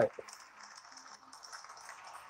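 A man's voice ends the word "right", then faint steady background hiss of room noise.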